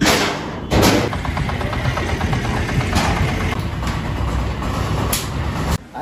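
A vehicle engine running steadily, its sound rising sharply just under a second in and then holding, heard inside the enclosed metal deck of a car carrier; it stops abruptly near the end.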